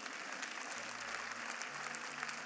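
Church congregation applauding steadily.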